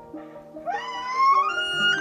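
Bull elk bugling: one loud, high, whistling call that starts about half a second in, slides up in pitch and then holds high. Background music plays underneath.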